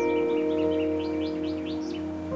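A bird chirping over soft background music of held notes: a quick run of short rising chirps that climb higher and louder toward the end.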